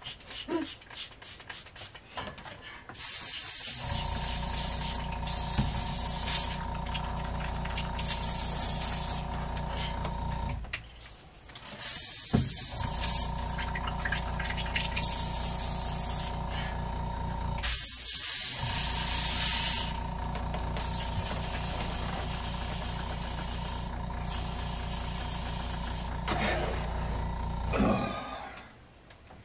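Airbrush air compressor running with a steady hum that starts a few seconds in and cuts out briefly twice, while the airbrush hisses in repeated bursts of a second or two as air and paint are sprayed onto the lure.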